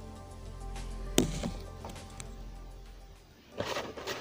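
Faint background music, with one sharp knock about a second in as a boxed Funko Pop figure is set down on a shelf.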